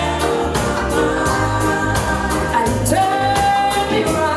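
Live band playing a lovers rock song, with female lead vocals over electric guitars, bass and drums. Steady drum beat, with a long sung note held near the end.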